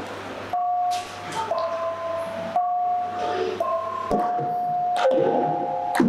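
Javanese gamelan starting to play about half a second in: bronze keyed and gong-chime instruments strike slow, ringing notes, about one a second, with a deeper thump about four seconds in.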